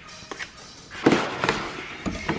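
Cardboard cupcake box and its clear plastic insert being handled: a burst of crackling rustles and clicks about a second in, after a quiet start.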